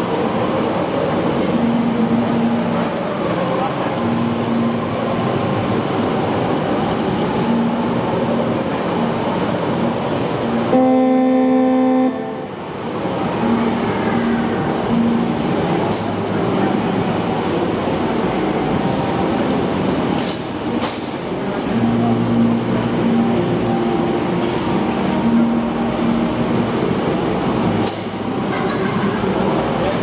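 Go-kart engines running as karts pull out and move around the track, with short pitched engine tones coming and going. About eleven seconds in there is a strong, steady horn-like tone lasting about a second.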